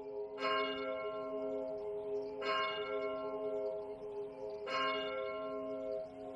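A bell tolling: three strokes about two seconds apart, each ringing on into the next.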